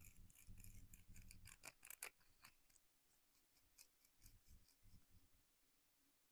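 Faint, quick scratchy clicks and scrapes of a small handheld massage tool worked at the back of the neck. They come thick and fast for the first two and a half seconds, then thin out.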